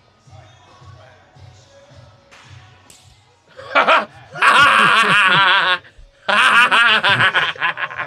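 Faint background music with a low beat and distant talk, then about three and a half seconds in a quick, loud open-hand slap to the face. Loud, prolonged laughter follows.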